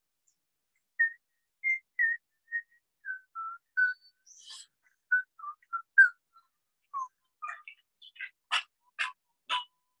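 A whistled icaro (Peruvian shamanic chant melody) played from a phone: short, clear whistled notes stepping downward in pitch. Near the end a rattle joins with a steady shaking beat about twice a second.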